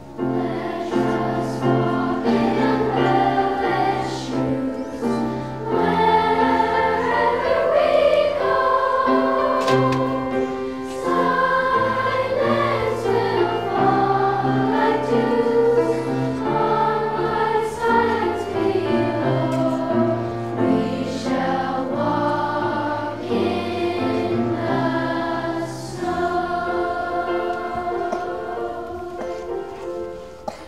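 Middle-school children's choir singing a slow piece with piano accompaniment, sustained sung notes over held chords. The music eases off near the end.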